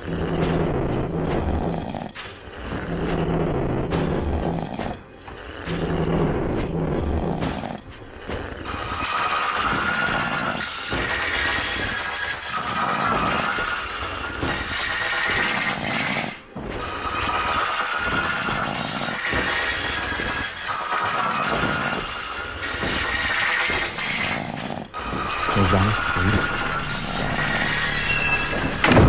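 Electronic ambient trip-hop music. A low, pulsing bass pattern with brief gaps opens the passage, then held synth tones come in higher up.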